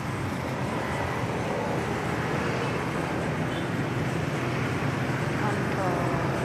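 A steady, even rumble of outdoor background noise like passing road traffic, with faint voices near the end.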